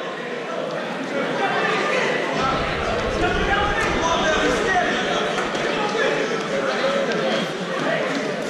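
Overlapping indistinct voices of many people talking and calling out in a gymnasium, with the reverberation of a large hall.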